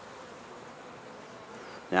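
Honeybees buzzing around the hive entrances, a steady hum.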